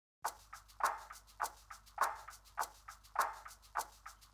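Light drumstick strokes on a drum kit in a steady, quiet rhythm: an accented stroke about every 0.6 s with softer strokes between.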